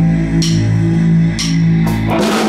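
Live rock band holding a sustained electric guitar chord over a low drone, with a cymbal tap about once a second. The full band comes in right at the end.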